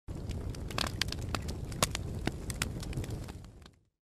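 Crackling, hissing noise with scattered sharp pops, fading out about three and a half seconds in.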